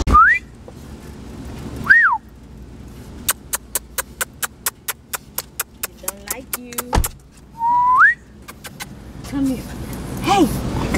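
A person whistling short calls to French bulldogs to get them out of a car's back seat: a rising whistle, then a falling one about two seconds in, then another rising one near the end. In between there is a run of quick, evenly spaced clicks, about four a second, and a single thump about seven seconds in.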